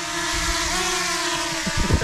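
Small quadcopter drone hovering close overhead, its propellers giving a steady buzzing whine that rises slightly in pitch about halfway through and then settles.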